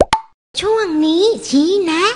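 Two quick rising pop sound effects, then a high, sing-song cartoon voice whose pitch swoops up and down as it calls out a short phrase.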